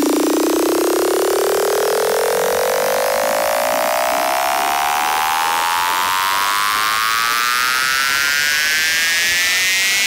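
Buzzy synthesizer riser in a psytrance track: one rich, saw-like tone sweeping slowly and steadily upward in pitch, with no beat under it, building up toward the next section of the mix.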